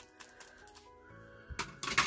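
Light plastic clicks from a small plastic toy action figure being handled and worked by hand, with a short clatter near the end. Faint background music runs underneath.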